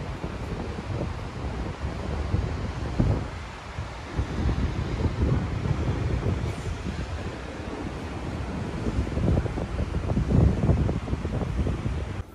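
Wind buffeting the microphone in uneven gusts, over the steady wash of surf breaking on rocks.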